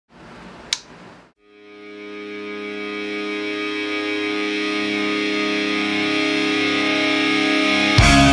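A faint hiss with a single click, then a distorted electric guitar chord held and swelling steadily louder as the guitar's volume knob is rolled up.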